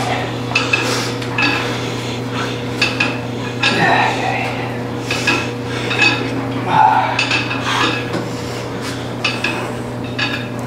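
Weight-stack plates of a seated leg curl machine clinking and clanking repeatedly as the reps are worked, irregular metallic strikes roughly every half second to second, over a steady electrical hum.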